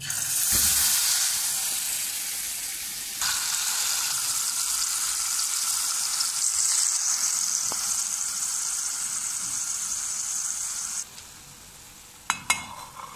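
Spice-marinated whole chicken sizzling loudly in hot oil in an aluminium pot, the hiss starting the instant the chicken is laid in and stopping suddenly about a second before the end.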